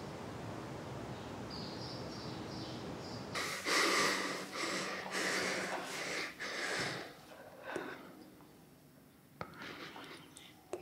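Faint outdoor ambience with a few faint bird chirps, then, about three seconds in, a girl crying: a run of loud sobbing breaths and sniffs for about three seconds, trailing off into quieter sniffles.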